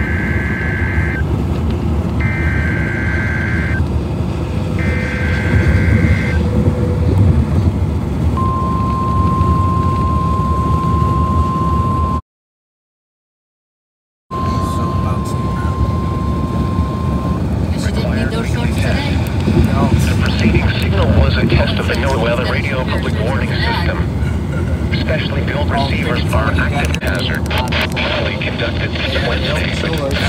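A Midland NOAA weather radio sounds a test alert: three short warbling data bursts (the SAME alert header), then the steady single-pitch warning alarm tone for several seconds, broken by a two-second dropout. This marks a required weekly test. Under it runs a car's steady low rumble, and after the tone come noisy radio audio and clicks.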